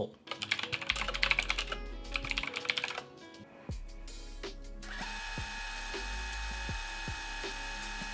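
Rapid typing on a computer keyboard for about three seconds, then background music with held tones and a steady beat.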